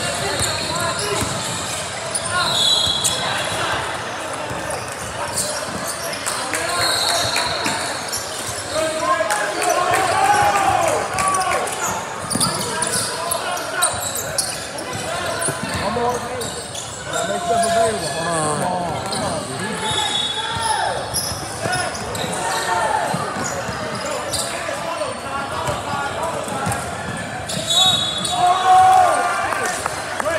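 Basketball being dribbled on a hardwood gym floor, with brief high squeaks of sneakers a few times and voices calling out across the court, all echoing in a large gym.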